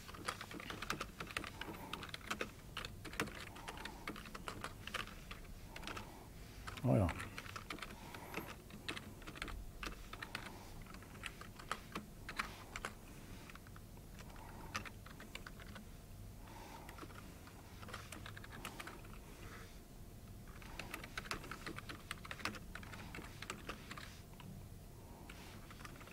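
Typing on a computer keyboard: irregular runs of keystrokes. About seven seconds in, a brief voice sound falling steeply in pitch is the loudest thing.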